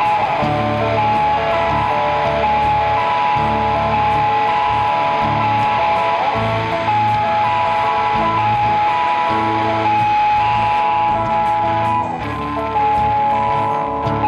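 A live band playing an instrumental passage: electric guitars and keyboard holding sustained notes over a steady bass line, with a regular light ticking beat. The sound dips briefly about twelve seconds in.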